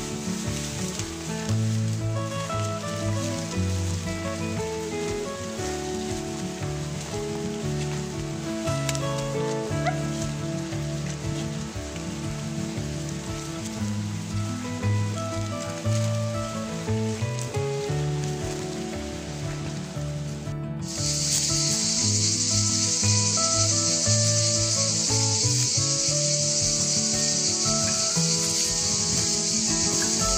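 Background music with a steady melody. About two-thirds of the way in, a loud, unbroken, high-pitched chorus of cicadas joins it.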